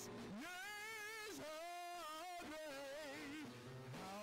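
Gospel worship singing: a lead singer on a microphone holding long notes with vibrato, backed by praise-team voices and instrumental accompaniment.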